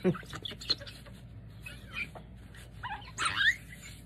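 Soft rustling and dabbing of a paper tissue blotting wet ink-dyed lace, with a short rising animal-like cry about three seconds in, the loudest sound.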